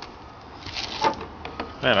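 Short scraping and a few light knocks of a widebody over-fender flare being handled and pulled away from the car's rear quarter panel.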